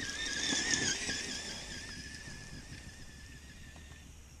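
Traxxas Stampede 2WD RC monster truck's brushed electric motor and gears whining at speed on a 3S LiPo battery. The high, slightly wavering whine is loudest about a second in, then fades as the truck drives away.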